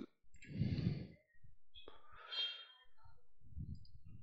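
A single mouse click, then faint breathing close to the microphone, once about half a second in and again about two seconds in.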